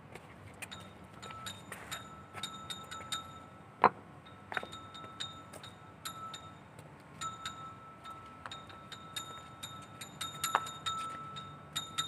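Irregular light clicks and clinks, with one sharper click about four seconds in, over a faint steady high tone that drops out for a couple of seconds and then comes back.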